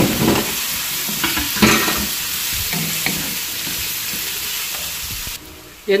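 Boiled pork cubes frying with onion and garlic in hot oil in a wok, sizzling steadily, while a wooden spatula scrapes and knocks against the pan as they are stirred. The sizzle drops away abruptly near the end.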